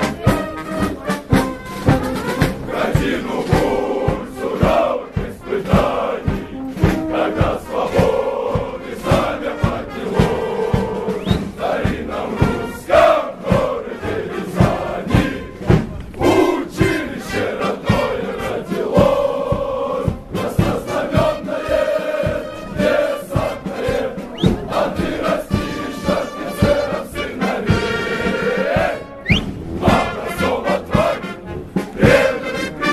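Massed male voices singing a Soviet military drill song in chorus over a steady marching beat.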